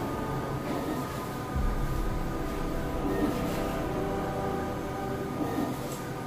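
Skyjet 512 large-format flex printer running, its print-head carriage shuttling across the banner media with a steady mechanical hum.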